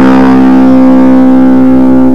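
Electric guitar through the BigZed Muff fuzz pedal: a single fuzz-distorted note held steady with long sustain.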